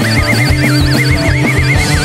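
Garage blues-rock band playing an instrumental passage: drums and bass under a high lead line that wavers with a fast, wide vibrato.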